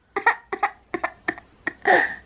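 A just-woken one-year-old baby crying in short, choppy sobs around a dummy in his mouth, about ten quick bursts that grow loudest near the end.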